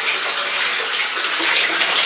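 Bath tap running, water pouring steadily into a filling bathtub, loud in the tiled bathroom.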